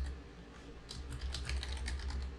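Computer keyboard being typed on: a couple of key clicks, then a quick run of keystrokes from about a second in.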